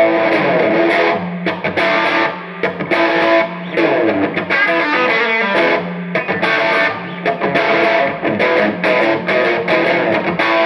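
Electric guitar played through the overdriven gain channel of a Time Travel TT15 tube amplifier head and matching cabinet, riffing steadily with a couple of brief dips.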